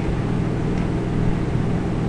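Steady low rumble and hiss of background noise, with no clear events.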